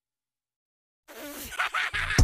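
Dead silence for about the first second, a gap between two edited clips. Then a noisy sound with a short gliding tone comes in, leading into the next clip's music.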